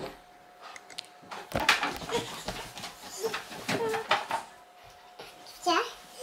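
A young girl's wordless voice sounds close to the microphone, mixed with rustling and knocking as the camera is handled. Just before the end comes a short vocal sound rising in pitch.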